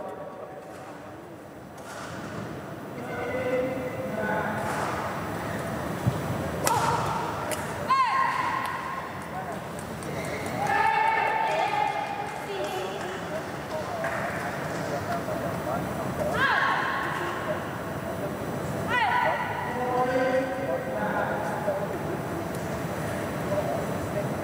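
Indistinct voices talking in a large indoor sports hall, with a few sharp knocks or thuds.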